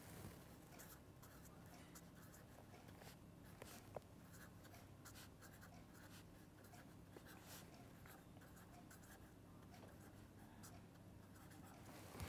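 Faint scratching of a pen writing on paper, in many short irregular strokes as words are written out, with a slightly louder click about four seconds in.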